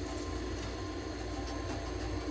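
A steady low mechanical hum of room background noise, with no distinct events.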